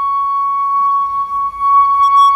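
Background music: a flute holding one long, steady high note.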